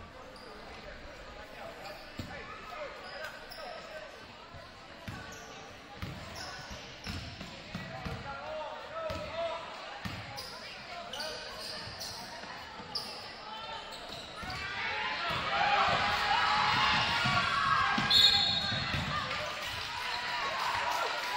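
A basketball being dribbled on a hardwood gym floor, with sneaker squeaks and spectator voices echoing in the hall. From about three-quarters of the way through, the crowd grows loud with shouting and cheering, and a short high whistle sounds near the end.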